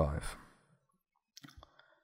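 A man's voice trailing off in the first half second, then quiet, with a few faint short clicks about a second and a half in.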